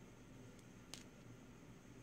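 Near silence: faint room tone with one short, faint click about a second in.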